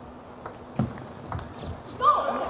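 Table tennis rally: the plastic ball clicking sharply off the rubber paddles and the table in a quick, uneven series of knocks, with a few low thuds of players' feet on the court floor.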